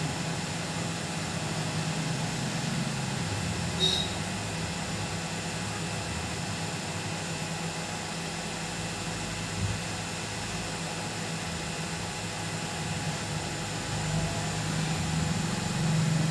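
Hot air rework gun blowing steadily, a low steady hum, as it heats a phone charging-port board to melt the solder under a newly fitted charging jack. A brief click about four seconds in.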